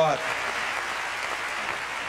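Congregation applauding, a steady wash of clapping that fills the pause in speech.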